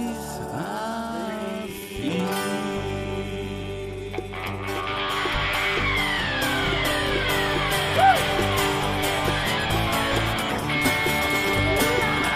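Blues band playing an instrumental break between verses: guitar to the fore, with notes that bend and slide in pitch, over a steady beat that sets in about five seconds in.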